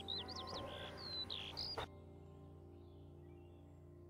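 Recorded Eurasian skylark song: a rapid run of varied chirps and whistles that cuts off abruptly about two seconds in. Soft background music runs underneath and carries on after it.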